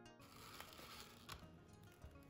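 Background guitar music cuts off just after the start, followed by faint crinkling and crackling of plastic cling film being stretched over a glass bowl.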